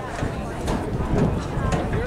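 Faint, distant shouts and calls of rugby players on the field, over a steady rumble of wind on the microphone.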